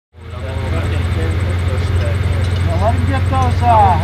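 Steady low engine rumble that fades in quickly at the start, with a man's voice talking over it from about three seconds in.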